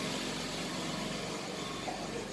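Faint steady low hum over background noise, with no speech.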